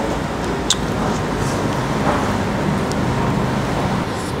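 Steady road traffic noise, with one light click of a utensil against the plastic noodle bowl under a second in.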